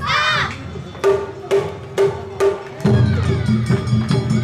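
Awa-odori festival band: a short high shouted call opens, then about four sharp, ringing strikes keep time at roughly two a second, and near three seconds dense drumming and the rest of the band come in.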